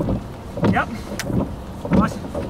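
Gusty wind buffeting the microphone in uneven rushes, with a short spoken "yep" about a second in.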